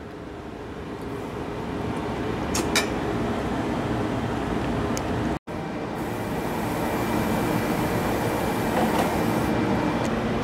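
A steady rushing, rumbling noise that grows gradually louder, with a couple of faint clicks and a brief dropout about halfway through.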